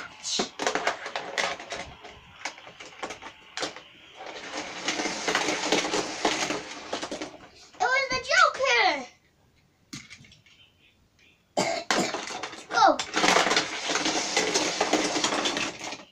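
Small toy cars clattering down a plastic spiral race-ramp tower, two runs of a few seconds each, with clicks and knocks of the cars being handled before the first run.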